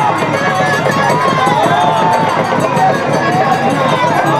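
A dense crowd of many voices calling out at once, overlapping and continuous.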